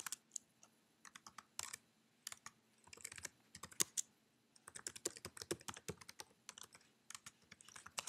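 Faint typing on a computer keyboard: quick runs of keystrokes entering a shell command, with a short pause about halfway through.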